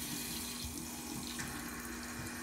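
Bathroom sink tap running, water pouring steadily into the basin.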